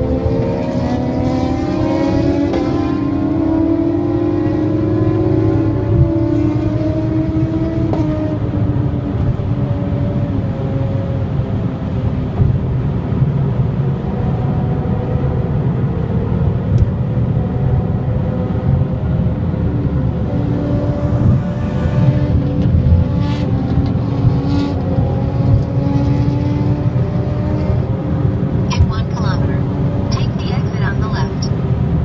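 Car engine and road noise heard from inside the cabin at expressway speed. In the first several seconds the engine pitch climbs and drops back a few times as it accelerates through the gears, then it holds a steadier tone at cruise.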